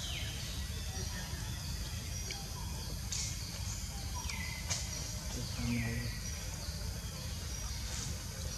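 Birds calling in the background: short high calls, each falling in pitch, repeating about once a second over a steady low rumble.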